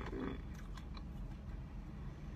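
A person chewing a bite of a mozzarella-filled Korean corn dog coated in French fries, with a few faint mouth clicks in the first second.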